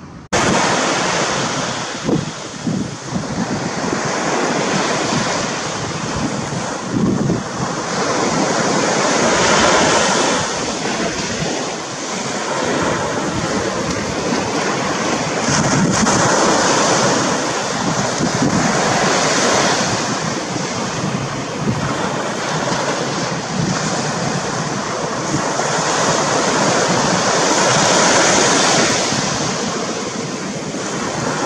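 Loud, steady rushing noise that swells and fades every few seconds, cutting in abruptly just after the start.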